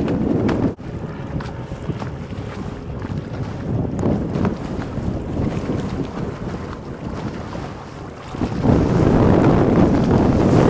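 Wind buffeting the microphone on open water. It is loud at the start, drops off suddenly just under a second in, runs lighter for several seconds, then gusts loud again near the end.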